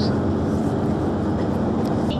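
Steady engine and road noise heard from inside a moving tour coach's cabin.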